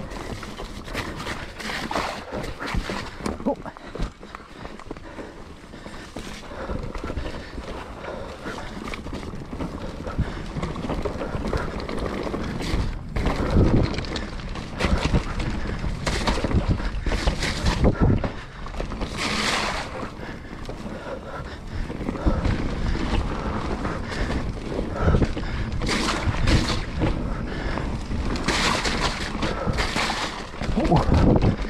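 YT Capra full-suspension mountain bike riding down a rough forest dirt trail: the tyres run over dirt and roots and the bike rattles and knocks irregularly over the bumps, with wind buffeting the microphone.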